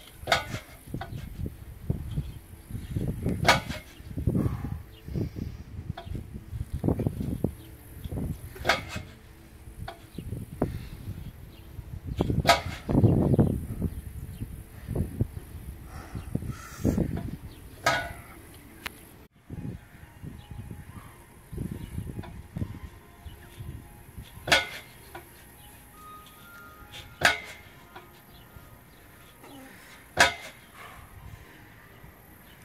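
Metal car deadlift frame lifting and setting down the rear of a small sedan, with a sharp clank every few seconds as each rep is made. Low rumbling gusts of wind on the microphone come in between.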